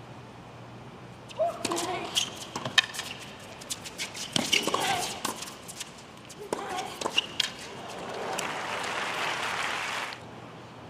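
A doubles tennis rally: a series of sharp racket strikes on the ball, with the players crying out on their shots. Near the end the crowd applauds as the point finishes.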